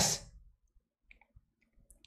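The end of a spoken word, then near silence broken by a few faint, short clicks.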